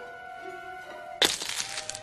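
Sustained orchestral film music, then about a second in a sudden loud crunching crack that crackles on for most of a second: a cockroach crushed underfoot.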